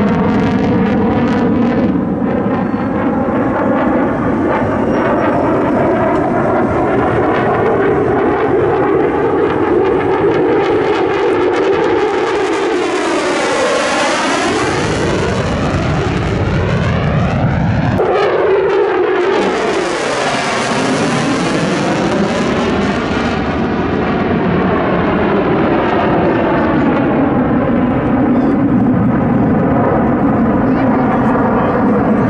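F-16 fighter jet's engine heard from the ground during an aerobatic display, loud and continuous. The sound brightens twice around the middle, with a sweeping, whooshing change in pitch as the jet passes closest.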